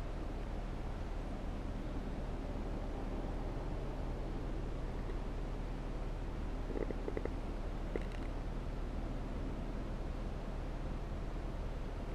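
Steady low hum inside a parked SUV's cabin, with a few faint light clicks about seven and eight seconds in.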